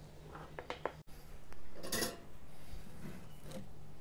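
Small metallic clicks and taps from handling an alligator clip and its wire, then a short rustle about two seconds in, over a faint steady low hum.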